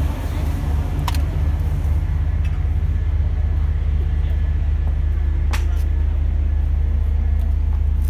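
Steady low motor hum, with two brief clicks about a second and five and a half seconds in.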